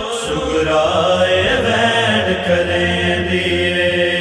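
Closing of a noha: a vocal chorus holds a low, steady humming drone, several voices on long sustained notes without words.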